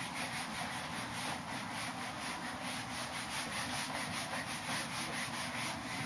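Whiteboard eraser rubbing across a whiteboard in quick, steady back-and-forth strokes, wiping off marker writing.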